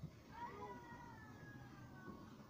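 A faint, high-pitched, drawn-out cry that starts about half a second in and falls slightly in pitch, over low room noise.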